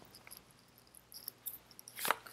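Faint, scattered ticks and light rustles of a tarot card deck being handled in the hands.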